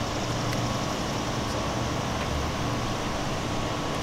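Steady outdoor background noise: a constant low hum under an even hiss, with no distinct events.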